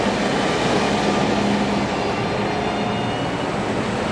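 Large farm tractors driving slowly past at close range: their diesel engines run with a steady low note over dense, even road and engine noise.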